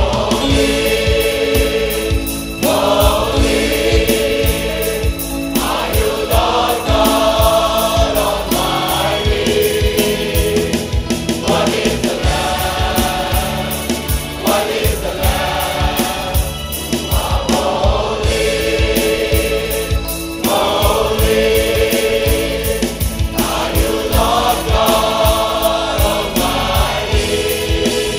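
A large choir singing a Christian worship song in phrases of a few seconds, accompanied by a band with electric guitar, keyboard and a steady beat.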